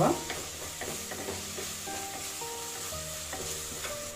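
Chopped onions and garlic sizzling in oil in a clay pot while being stirred with a wooden spatula, sautéing until soft. A soft background melody plays under it.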